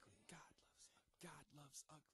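A very faint voice speaking in short broken phrases, barely above silence.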